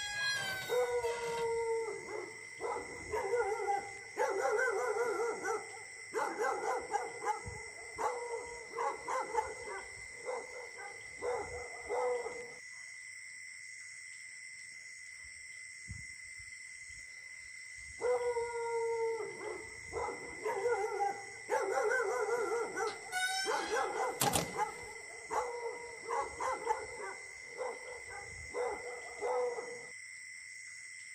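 Dog howling and barking in a run of calls, the first a falling howl. The calls stop for about five seconds in the middle, then start again the same way. A steady high-pitched whine runs underneath.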